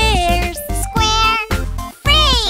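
Children's song: a high cartoon voice singing over upbeat backing music.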